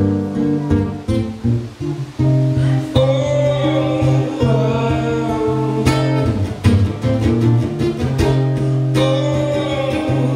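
Solo guitar played live, plucked and strummed, with long ringing notes over a steady low note and a dip in loudness about two seconds in.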